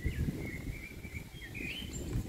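A small bird singing, a wavering high chirping phrase with a louder chirp near the end, over a steady low rumble of outdoor noise.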